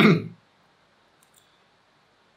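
A man's voice says "zero" at the start, then near silence with one faint, short click about a second and a quarter in.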